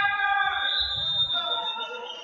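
A held electronic tone of several steady pitches that fades out about a second and a half in, over the noise of a sports hall.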